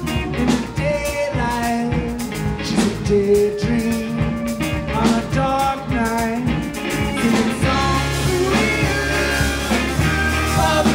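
Rock band playing live: acoustic guitar, drums and bass, with a voice singing a melody over them. About three-quarters of the way through, a held low bass note sets in under the music.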